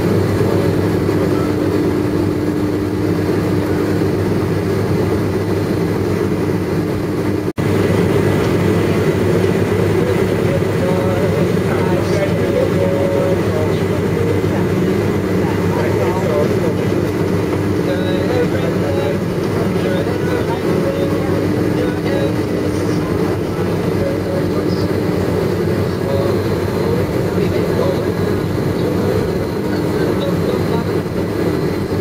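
Steady cabin noise inside a McDonnell Douglas MD-11 airliner taxiing after landing: the engines and airflow make a low, even drone with a constant humming tone.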